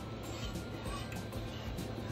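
A whisk stirring and lightly scraping against a stainless steel saucepan of cheese sauce, with irregular faint clinks, over quiet background music.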